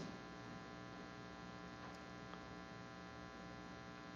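Faint, steady electrical mains hum in the recording chain, a low buzz with many even overtones.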